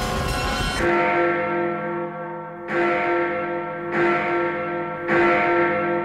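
Big Ben's great clock bell tolling, four slow strokes, each ringing on with a deep, wavering hum. The last of a music cue sounds just before the first stroke.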